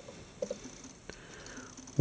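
Quiet room tone with a few faint, soft clicks: a pair of small ticks about half a second in and a single click about a second in.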